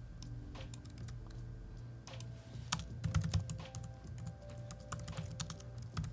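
Typing on a laptop keyboard: a run of quick, irregular key clicks, busiest about three seconds in.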